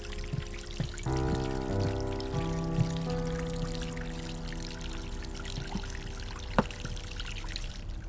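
Thin stream of water trickling steadily from an ornamental fountain into a glass basin, under soft background music of held chords that come in about a second in. A single sharp click near the end.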